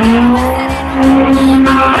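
Street-race car launching hard: the engine note climbs over about a second, then holds high at full throttle, with tyre noise from the launch.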